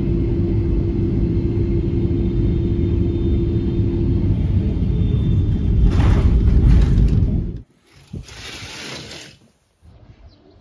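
Airliner cabin noise: a loud, steady low rumble of jet engines and airflow, with a faint steady hum over the first few seconds. The sound grows louder and hissier about six seconds in, then cuts off abruptly and is followed by a shorter, quieter hiss.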